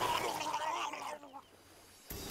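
A cartoon character's high, stifled giggle through hands held over its mouth, wavering, then sliding down in pitch and stopping just over a second in.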